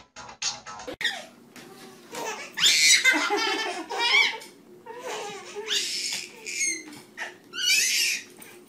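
A baby laughing in repeated high-pitched bursts, loudest a few seconds in, after about a second of music that ends at a cut.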